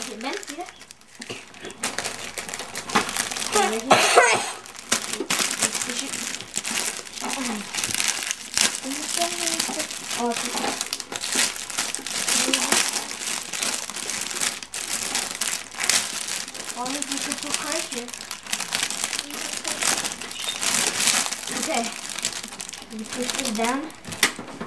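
Red gift wrapping paper crinkling and crumpling as a present is torn open by hand, an irregular run of rustles and crackles.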